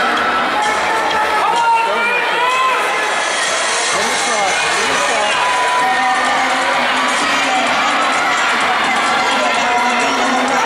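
Crowd of spectators in an indoor track arena cheering and shouting, many voices overlapping without a break.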